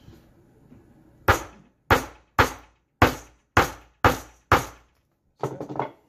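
Hammer striking to set rivets in a leather sheath strap: seven sharp blows about two a second, beginning a little over a second in.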